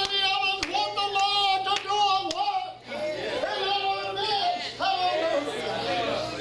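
Hands clapping in a steady beat about twice a second through the first half, under a loud voice calling out in long, drawn-out phrases.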